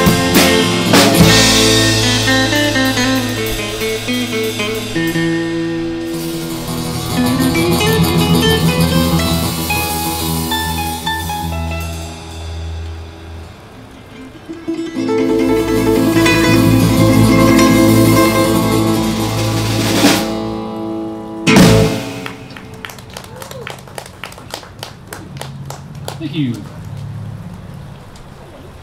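Live band of acoustic guitars and a drum kit playing. The music thins out about twelve seconds in, comes back full about fifteen seconds in, and ends on one loud final hit a little past twenty-one seconds, after which only quieter scattered clicks remain.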